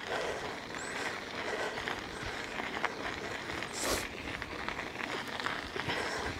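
Steady rolling noise of a bicycle ridden along a gravel path, the tyres crunching over grit, with one brief louder hiss about four seconds in.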